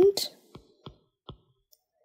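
Three short, light clicks, a bit under half a second apart, with a fainter tick after them.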